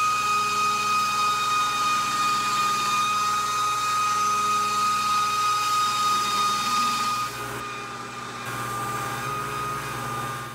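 Belt grinder running with a steady whine and hum as a steel sword blade is ground against the abrasive belt during finish grinding. A little past two-thirds of the way through, the sound drops in level and changes slightly, as a finer belt pass takes over.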